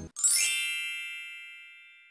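A single bright chime, an editing sound effect, struck once and ringing out, fading away over about two seconds.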